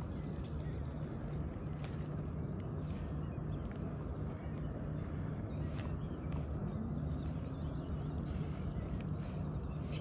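A steady low outdoor rumble with a faint steady hum underneath, and a few faint ticks.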